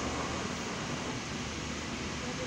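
Steady background hiss and hum of indoor ventilation and store ambience, with no distinct events.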